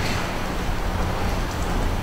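Steady low room noise, a rumble and hiss with no distinct events, during a break in speech.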